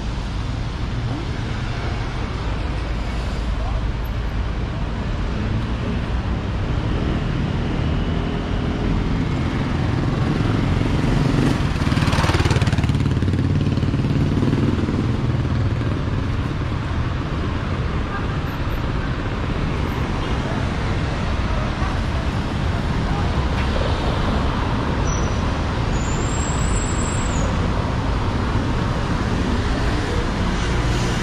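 City street traffic noise with a steady low rumble, one vehicle passing close and loudest a little before the middle.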